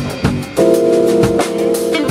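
Small jazz group playing live: drum kit, electric bass and keyboards, with a held chord coming in about half a second in.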